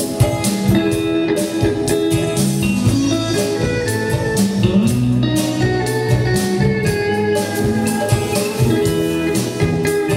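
Live band playing: electric guitar lines over a drum kit keeping a steady beat.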